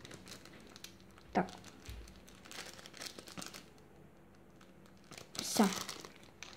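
Small plastic packet of water beads crinkling in the hands in short, scattered crackles as the beads are shaken out of it.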